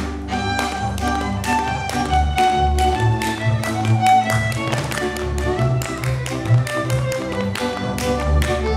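Folk dance music led by a violin, with the dancers' boots stamping and slapping on the stage in sharp strokes, several a second.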